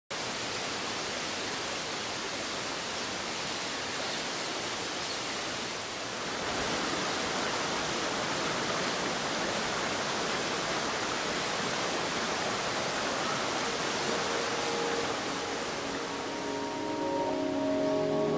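Shallow rocky stream rushing steadily, a little louder after about six seconds. Soft music with held notes fades in near the end.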